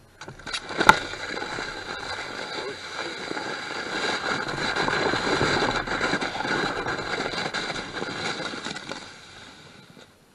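Foam sled sliding over snow and corn stubble: a rough scraping hiss that builds to its loudest midway and dies away as the sled slows to a stop near the end, with a sharp knock about a second in.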